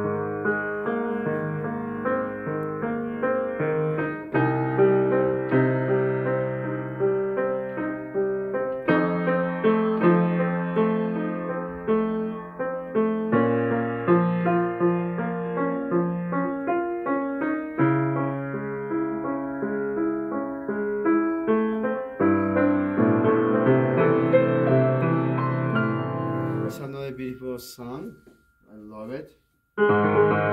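Steinway baby grand piano being played: a melody over sustained bass notes and chords. About 27 seconds in the playing breaks off with a few sharp clicks and a brief near-silent gap, then the piano starts again right at the end.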